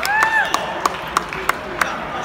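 Steady hand clapping from spectators, about three claps a second, with a voice calling out at the start as a wrestling bout's winner is declared.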